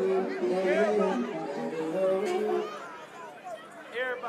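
People talking close by amid crowd chatter, over a held note of music from the party's sound system. The music stops about two-thirds of the way through, leaving the chatter quieter.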